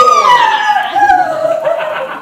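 Newborn baby crying: one long wail that slowly falls in pitch.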